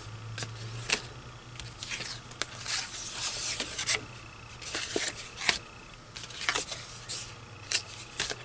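Old paper cards and envelopes handled by hand: irregular rustling, sliding and light flicks of paper against the pile, over a steady low hum.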